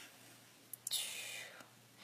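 A faint mouth click, then a soft breathy hiss of about half a second that fades out: a person taking a breath in a pause in her talk.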